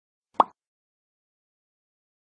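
A subscribe-button animation sound effect: one short cartoon pop about half a second in, rising in pitch.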